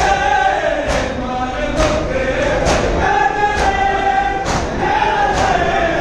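A group of voices chanting a slow lament in unison, holding long notes. A sharp beat falls about once a second.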